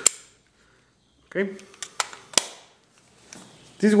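Sharp clicks from handling small film cameras: one at the start, then a few more about two seconds in, the last the sharpest.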